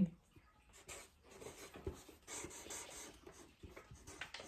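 Felt-tip marker writing letters on paper: faint, irregular scratching strokes.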